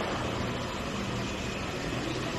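Steady background noise of a large exhibition hall: an even wash of hall sound with a faint low hum.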